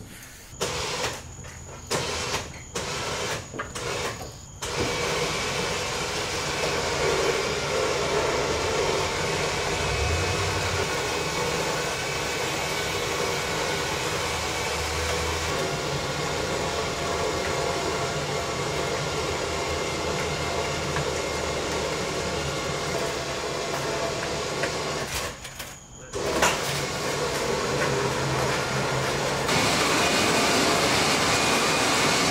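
Electric trailer winch pulling a car up a ramp into an enclosed trailer. The motor is jogged in several short bursts, then runs steadily, pausing briefly near the end before starting again.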